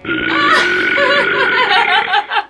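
A person's long, loud belch, wavering in pitch, that starts suddenly and lasts about two seconds.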